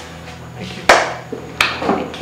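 Two sharp hits: a loud one about a second in and a weaker one about half a second later, over soft steady background music.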